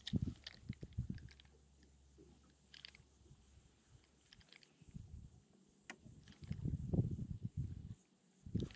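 Light clicks and ticks from handling a spinning rod and reel during a lure retrieve, with a few low knocks in the first second and a longer low rumble a little before the end.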